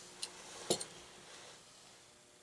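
Two light clicks, the second a small knock, from handling a plastic replacement plug and its parts on a wooden workbench, over faint hiss.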